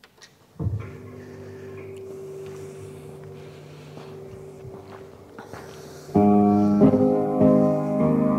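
Recorded piano accompaniment for ballet class played over the studio sound system: a held chord sounds about half a second in, then the music proper starts much louder about six seconds in.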